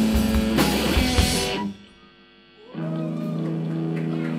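Live rock band with electric guitar, bass guitar and drum kit playing loud, then stopping dead about a second and a half in. After a hush of about a second, an electric guitar rings in with a sustained chord and no drums.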